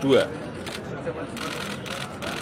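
Camera shutters clicking in scattered quick bursts over a steady background hubbub.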